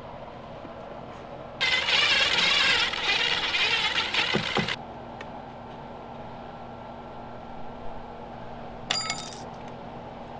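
Blue painter's tape pulled off the roll in one long rip lasting about three seconds, then a second short rip near the end.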